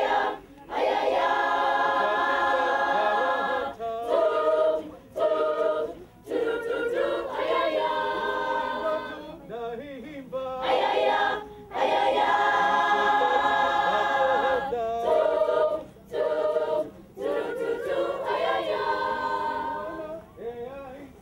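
A choir of schoolgirls singing a cappella, in phrases of held chords with short breaks between them.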